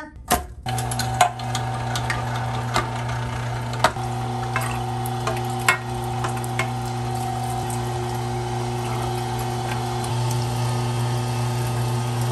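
Electric meat grinder motor running steadily with a low hum while grinding raw frog leg meat, starting about half a second in. A few sharp clicks ring out in the first half.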